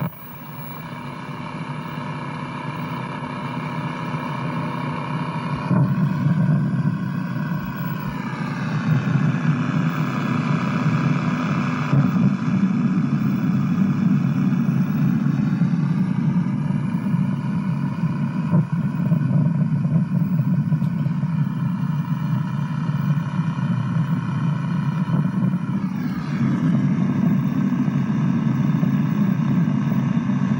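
Soundtrack of an open-reel videotape played back on a National NV-3082 portable video recorder. It is a steady low drone with a set of higher tones that slide in pitch about seven seconds in and again near the end, and it grows louder over the first few seconds.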